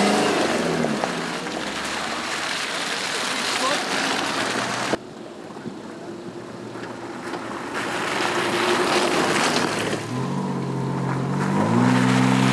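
Off-road 4x4 vehicles driving along a muddy dirt track, engines running under tyre and gravel noise. Twice, at the start and in the last couple of seconds, an engine note rises as a vehicle climbs towards the camera. About five seconds in, the sound drops suddenly to a quieter level.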